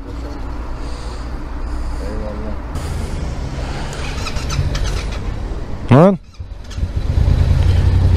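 Yamaha MT-series motorcycle engine idling steadily, a little louder near the end.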